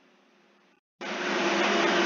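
After a moment of dead silence, a steady rushing hiss over a low hum cuts in suddenly about halfway through.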